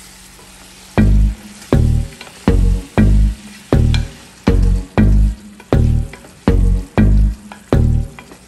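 A spatula stirring and sizzling chicken adobo in a pan. About a second in, background music with a heavy, syncopated bass beat comes in and is louder than the frying.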